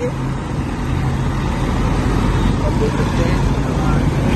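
Steady road noise heard from the open boot of a moving car: tyres on the road, a low engine hum, and the rush of air past the open rear.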